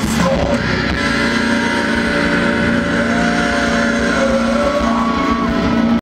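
Live rock band with distorted electric guitars. About a second in, the drumming gives way to a held, ringing chord with steady whining feedback tones, typical of a song's final chord being sustained.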